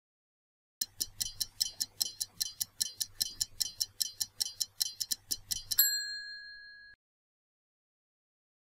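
Stopwatch countdown sound effect: fast, even ticking at about five ticks a second for roughly five seconds. It ends in a single bell ding that rings out and fades over about a second, marking time up.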